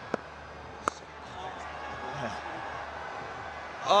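A cricket bat strikes the ball once, a sharp crack about a second in, just after a fainter click. Stadium crowd noise then rises.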